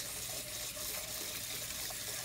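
Kitchen tap running steadily into a frying pan held in a stainless steel sink, the water splashing off the pan.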